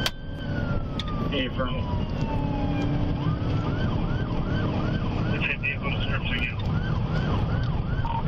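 Police car siren heard from inside the pursuing patrol car: a sharp click, then a long falling wail over about three seconds, then a fast repeating yelp cycling about two to three times a second, over steady engine and road noise.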